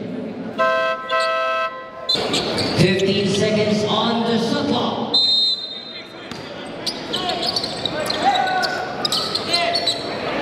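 Basketball scoreboard buzzer sounding a single horn tone of about a second near the start, then ball bounces and voices, with a short high whistle about five seconds in.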